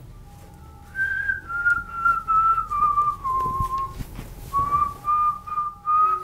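A person whistling a tune, starting about a second in: a string of held notes that steps downward and then climbs back a little, over a faint low hum.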